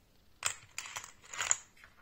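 Small rotary-tool accessories and their clear plastic storage case being handled: a quick series of sharp clicks and rattles lasting about a second, with the loudest knocks at its start and end.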